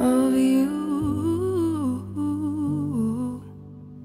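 Music: a singer hums a wordless melody that rises and falls over soft, sustained low accompaniment, and the humming stops about three and a half seconds in.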